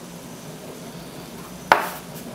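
Faint steady room hiss, then one sharp knock on the wooden tabletop near the end as flour is laid out on it.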